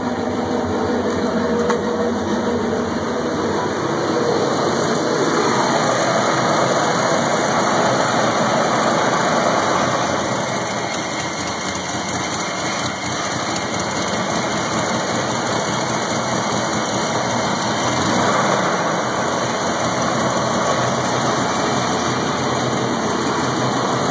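Volvo 245 engine running with the hood open during a Seafoam intake-cleaning treatment, a steady churning run, like a big old washing machine.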